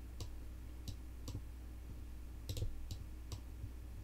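Computer mouse clicking about seven times at an irregular pace, with a quick pair about halfway through, over a steady low electrical hum.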